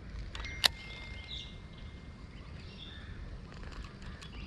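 Birds chirping now and then over a steady low rumble, with one sharp click a little over half a second in.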